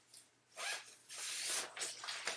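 A zipper on the fabric cover of a collapsible photo reflector being pulled in a few quick runs, starting about half a second in, with the cover rustling as it comes off.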